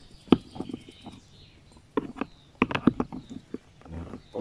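Hard plastic clicks and knocks as the parts of an action-camera mount are handled and pulled apart: a sharp click about a third of a second in, then a quick cluster of clicks and taps in the last two seconds.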